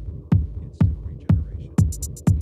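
Electronic techno music: a steady kick drum about twice a second over a low bass hum, with fast hi-hats coming in near the end.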